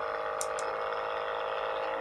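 Percussion massage gun running steadily at its highest (sixth) speed, held free in the air rather than pressed against anything: a loud, even motor hum and whine holding several level pitches.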